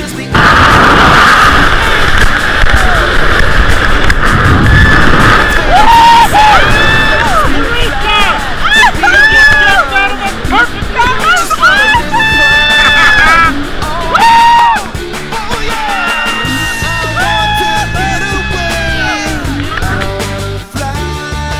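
A few seconds of wind rushing over the microphone, then people whooping and yelling with excitement in long rising and falling calls, over rock music.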